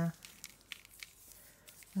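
A scatter of faint, short ticks from coarse sea salt grains sprinkled from the fingers onto damp watercolour paper.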